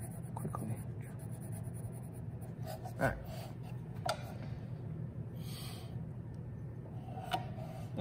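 Graphite drawing pencil scratching on paper in short strokes, over a steady low hum, with a few light knocks and taps about three and four seconds in.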